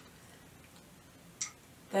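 Quiet room tone with a single short click about one and a half seconds in.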